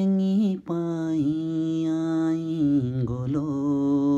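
A man singing unaccompanied in long, steadily held notes, like a slow chant; after a short break near the start he holds one note for about two seconds, then steps down to a lower note for the rest.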